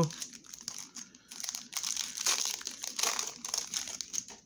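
Foil wrapper of a Pokémon TCG booster pack crinkling as it is torn open and the cards are pulled out, a crackly rustle with a short pause about a second in.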